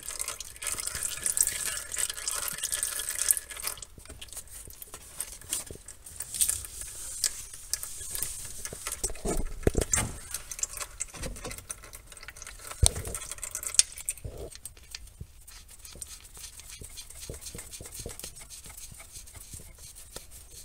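Gear oil running out of a manual gearbox's fill hole and dripping into a drain pan: a steady trickle for the first few seconds, then scattered light knocks and handling noises. Oil running out of the fill hole is the sign that the gearbox is full.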